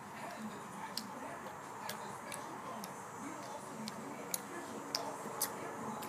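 A berry blue jelly bean being chewed with the mouth closed: quiet wet chewing with scattered sharp mouth clicks, about one a second, over low room noise.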